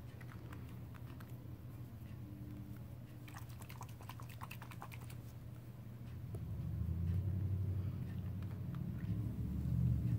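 Desk handling noise: a quick run of light clicks and taps about three to five seconds in, then a louder low rustling rumble from about six and a half seconds as a knit sweater sleeve moves close over the microphone.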